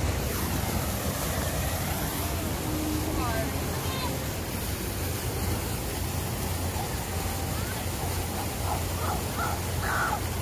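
Steady rushing background noise with a deep rumble underneath, and faint voices in the distance.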